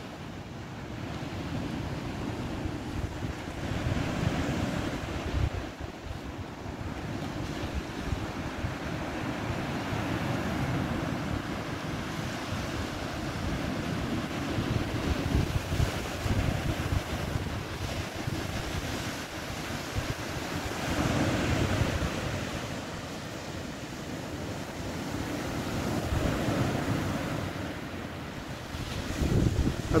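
Small sea waves breaking and washing up a beach, swelling every five or six seconds, with wind buffeting the microphone.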